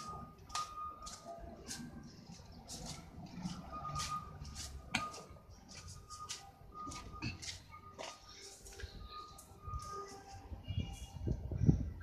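Footsteps on a gravel path, irregular short crunches about once or twice a second, with faint bird chirps in the background.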